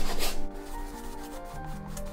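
Brush scrubbing paint onto a canvas in loud, rasping strokes that stop about half a second in, leaving soft background music with held notes.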